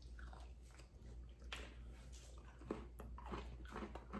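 Faint chewing of frosting-dipped sugar cookies, with a few small clicks.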